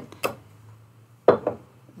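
A few light clicks and taps as a thread spool is handled at a sewing machine, the sharpest pair about halfway through, over a faint low steady hum.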